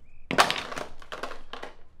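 Crunching, rustling noise of something being handled, in several quick strokes over about a second and a half, loudest at the first.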